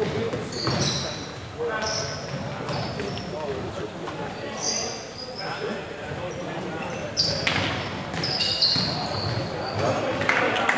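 Futsal being played in an echoing sports hall: the ball being kicked and bouncing on the floor, short high-pitched squeaks of shoes on the hall floor, and players calling out to each other.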